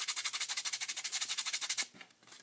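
Rapid scratchy rubbing against cardstock, about fifteen strokes a second, clearing baking soda off super glue that the soda has set hard; it stops just before the end.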